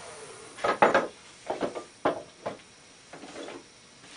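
Several sharp knocks and clatters of woodturning hand tools being handled and set down, the loudest about a second in.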